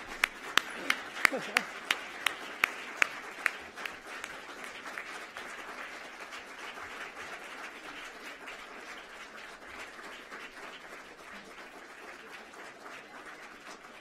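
Audience applauding in an auditorium. One person claps loudly and close, about three claps a second, for the first three and a half seconds, and the applause then dies away gradually.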